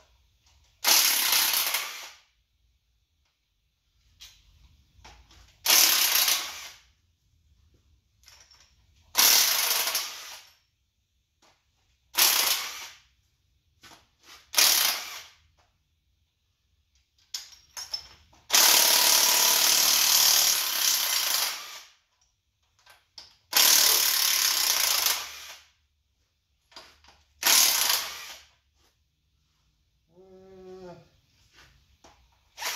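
Impact wrench hammering in about eight short bursts of one to three seconds, with pauses between, loosening bolts on an engine being torn down. The longest burst runs about three seconds, just past the middle.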